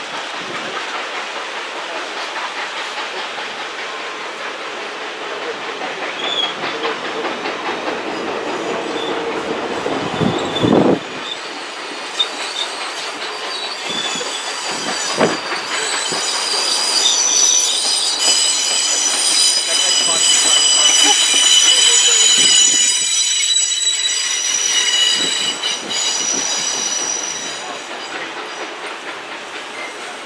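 Passenger railroad cars rolling past on a curve, their wheels rumbling over the track with occasional clunks. From about halfway through, the wheel flanges squeal in high, steady tones against the curved rail. The squeal and the rolling fade near the end as the last car passes.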